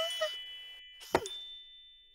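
Cartoon sound effects as suitcases drop onto a stack: high chime tones ringing and fading, and a sharp knock with a quickly falling pitch about a second in.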